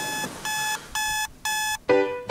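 Electronic alarm clock beeping: short, steady, high-pitched beeps about two a second. Music comes in right at the end.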